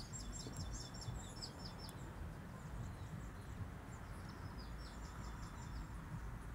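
Small birds chirping faintly in the background, short high chirps in two flurries, over a low outdoor rumble.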